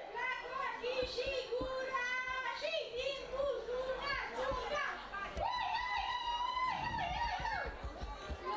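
High-pitched voices calling and singing out in drawn-out, wavering notes, with one long held high note in the second half.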